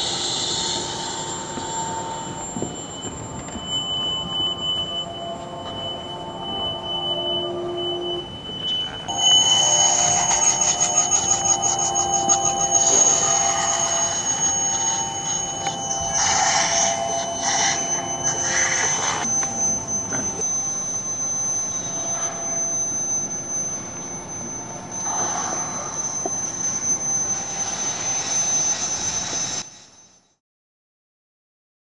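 Electronic laptop music: sustained high synthetic tones over a noisy, rumbling texture. It turns denser and louder about nine seconds in, with a flurry of rapid clicks, and cuts off abruptly at the end.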